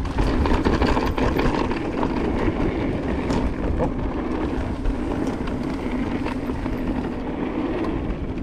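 Cube Stereo Hybrid 160 electric mountain bike riding down a dirt trail: steady tyre noise and rumble on the ground, with frequent small clicks and rattles from the bike over bumps.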